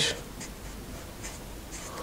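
Marker pen writing numerals on paper: a few short, faint strokes scratching across the sheet.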